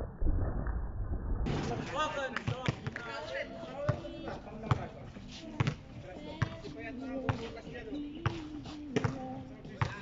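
A basketball being dribbled on a hard outdoor court, one bounce a little under every second, with players' voices. A short low rumble comes first.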